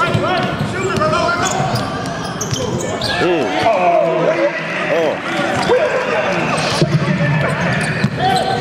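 Basketball game on a hardwood court: the ball being dribbled and bounced on the floor, sneakers squeaking in short sliding squeals, under a steady mix of players' and spectators' voices.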